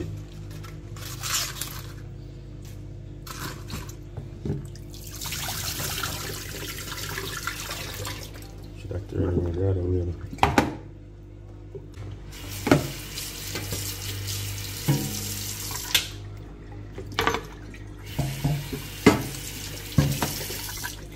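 Water from a kitchen tap running into a stainless-steel sink, in stretches, as cabbage leaves are rinsed. A few sharp knocks against the sink come in between.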